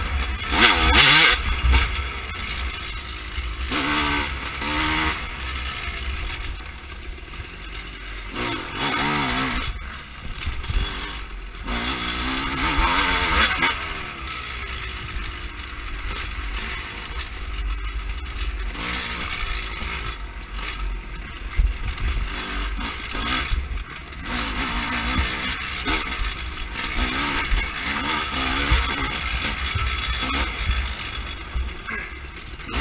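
Dirt bike engine revving up and down over and over as the rider works the throttle on a rough trail. Under it runs a steady low wind rumble on the onboard camera's microphone.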